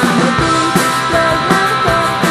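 Live punk rock band playing with electric guitar, bass guitar and drums on a steady, driving beat.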